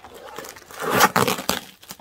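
Packing tape being ripped off a small cardboard box, the cardboard tearing with it. The loudest rip comes about a second in.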